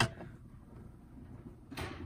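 Portable wind-up gramophone being handled: a sharp click as the tone arm and reproducer are moved, a faint steady whir of the spring motor turning the bare platter, and a short scraping knock near the end as the brake lever is reached for.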